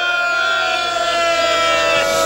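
Public-address microphone feedback: a loud, steady, high howl that sags slightly in pitch.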